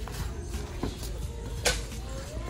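Store background noise with a low rumble and a faint held tone, broken by a couple of light knocks and a sharp click about one and a half seconds in.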